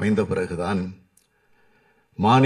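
A man making a speech in Tamil into a microphone, stopping about halfway through for a pause. The pause holds only a single faint click.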